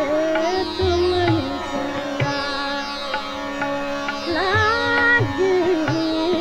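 Hindustani classical music, a dadra in raag Pahari: a melody line holding notes and sliding between them, over a few low tabla strokes.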